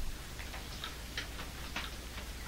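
Chalk tapping and clicking against a blackboard as it is written with: a string of short, sharp, irregular ticks, about three or four a second.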